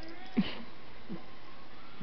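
A cat giving two short, low, falling mews, about half a second in and again just after a second in.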